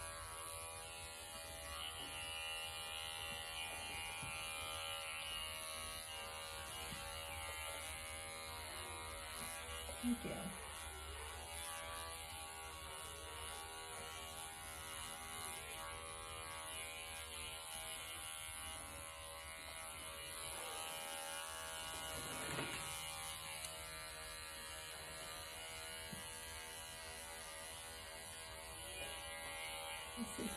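Cordless pet clipper, a Wahl Bravura, running with a steady electric hum as it shaves a Persian cat's matted coat. Two brief short sounds break in, about ten and twenty-two seconds in.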